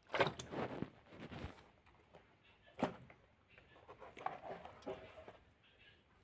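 Handling noises of fish being lifted and shifted in a plastic basin: irregular knocks, slaps and rustles, with a sharp knock just after the start and another about three seconds in.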